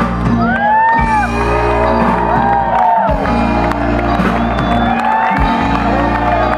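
Live band music with steady low notes, while the audience whoops and shouts over it.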